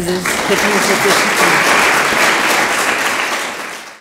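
Audience applauding, with a voice and a laugh over the clapping in the first second; the applause tapers off near the end.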